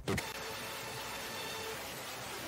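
Steady hiss of background noise with faint held tones underneath, after a brief sound at the very start.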